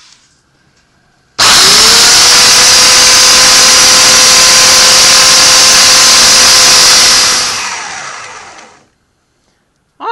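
Bench belt sander switched on, spinning up with a brief rising whine, then running loud and steady for about six seconds while a cast sterling silver bullet's base is ground down. It is then switched off and winds down to a stop.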